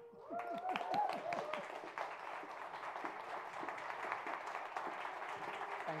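Audience applauding steadily, a dense sustained clapping that starts just after the beginning and keeps up throughout.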